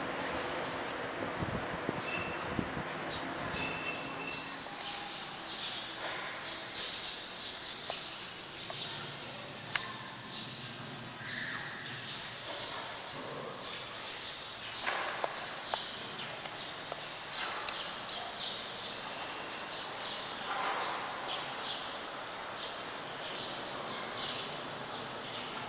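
Insects droning, a steady high-pitched trill that comes in abruptly about four seconds in, over faint ambient hiss with a few light clicks and knocks.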